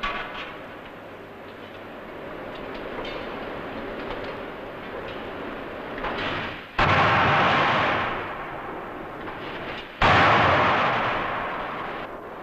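80,000 kg·m drop hammer forging a red-hot blank into a jet-engine wheel disc: two heavy blows about three seconds apart in the second half, each a sudden loud bang followed by a rush of noise that fades over a second or two, over a steady forge din.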